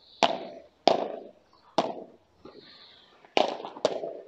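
Padel ball being hit during a rally: five sharp pops at uneven spacing, the last two close together near the end.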